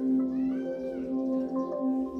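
Fire TV setup sound-test music playing through the TV's speakers: slow, sustained chime-like tones that hold steady. About half a second in, a brief high cry rises and falls over the music.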